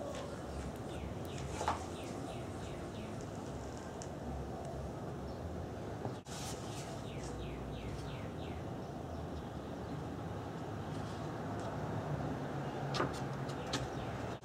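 A bird singing: a quick run of short falling notes, about four a second, heard twice, over a steady low background hum.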